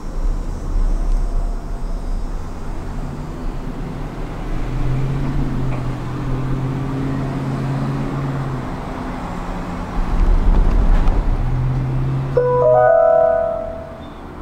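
Steady ride rumble inside a moving Disney Skyliner gondola cabin, with a low hum that comes in twice and a louder stretch of rumble about ten seconds in. Near the end, a short chime of a few bell-like notes sounds over the cabin's speaker, the cue for a recorded onboard announcement.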